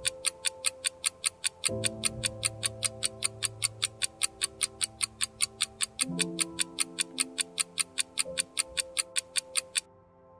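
Countdown-timer ticking sound effect, a fast even tick several times a second, over soft held chords of background music that change about two and six seconds in. The ticking stops near the end as the count reaches zero, marking the end of the answer time.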